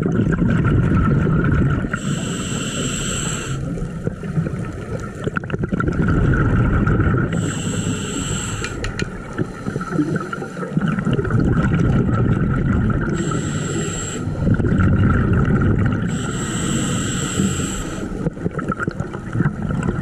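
Scuba regulator breathing heard through an underwater camera: four inhalations, each a hiss with a high whistle lasting about a second, with the low rumble of exhaled bubbles between them.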